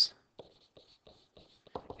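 Faint scratching of a stylus handwriting a word on a digital writing surface: a quick run of short strokes.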